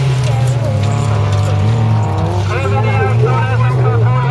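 Folkrace car engine running at high revs. Its pitch falls over the first couple of seconds and then climbs again.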